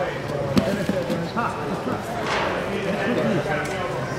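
Voices in a large sports hall, overlapping talk and calls, with a few short sharp knocks; the most prominent comes about half a second in.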